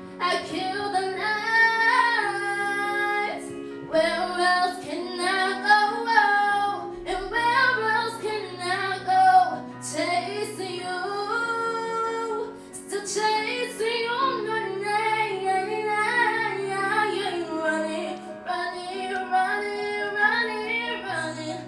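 A girl singing a solo into a handheld microphone, amplified, over instrumental accompaniment that holds low sustained chords beneath her melody; she pauses briefly between phrases.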